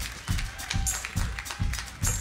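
Live band vamping a steady groove on drums and bass guitar, about four low beats a second, with audience applause over it.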